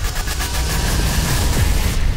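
Action-film trailer soundtrack: music mixed with a loud, dense rushing noise and deep rumble that sets in abruptly.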